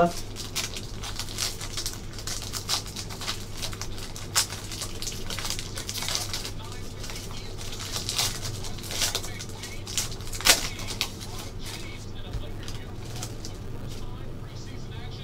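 A 2018 Panini Spectra Football hobby pack's wrapper being flexed and torn open, with irregular crinkles and sharp crackles, the loudest about ten and a half seconds in, then cards sliding out. A steady low hum runs underneath.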